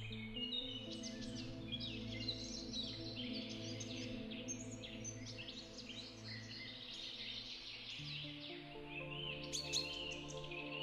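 Soft background music of sustained chords, with birds chirping and singing throughout. The chords shift near the start and again about eight seconds in.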